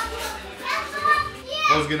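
Children's voices talking and calling out in the background.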